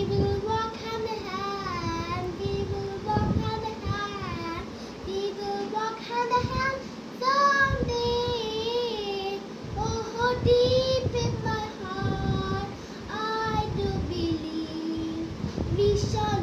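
A young boy singing an English song solo, holding and bending notes in phrases with short breaks for breath between them.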